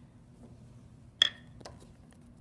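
A glass dish clinks as it is set down on a hard lab bench: one sharp ringing clink about a second in, then a lighter tap half a second later.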